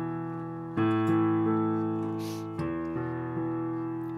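Piano playing a slow left-hand arpeggio: single low notes struck one after another and left to ring, with a louder note about a second in and two more near the end.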